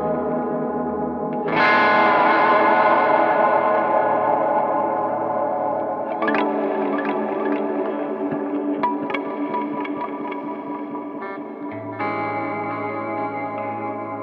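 Electric guitar played through an MXR Timmy overdrive pedal, lightly distorted. Chords are struck about a second and a half in, again at about six seconds and near twelve seconds, each left to ring out and fade.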